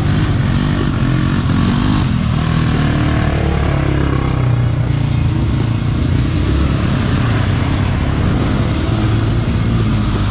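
Quad bike (ATV) engines running and revving as the bikes plough through a muddy, water-filled track.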